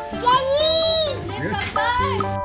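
A toddler's voice calling out in one long high-pitched call, then shorter sounds near the end, over background music.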